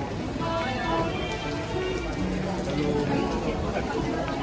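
Heavy rain falling on wet paving, a steady hiss, under background music with a melody.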